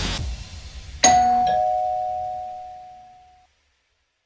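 Background music cutting off just after the start, then a two-note descending chime, a ding-dong, struck about a second in, ringing on and fading away over about two seconds.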